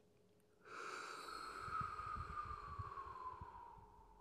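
A long, slow exhale through pursed lips, as if blowing through a straw, starting just under a second in: a soft breathy rush with a faint whistling tone that slowly falls in pitch and fades away.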